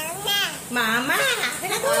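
Young children talking in high-pitched voices, three short phrases with brief pauses between them.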